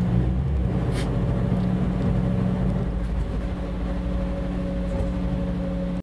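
Train running along the track, heard from the front of the train: a steady engine hum with a brief sharp click about a second in.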